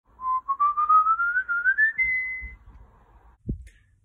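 Whistling: a quick run of about a dozen short notes climbing steadily in pitch, ending on a held high note about two and a half seconds in. A brief low thump follows near the end.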